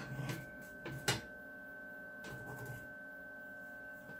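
Two sharp clicks, about a third of a second and about a second in, as a Magnum MagnaSine inverter system is switched on. Under them runs a faint, steady, high electrical whine and hum.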